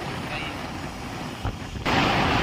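Wind rushing over a phone's microphone with road noise from a moving two-wheeler, riding pillion. Near the end the wind noise suddenly gets much louder.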